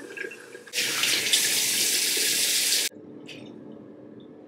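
Tap water running into a sink as a face is rinsed off, starting about a second in and stopping suddenly about two seconds later.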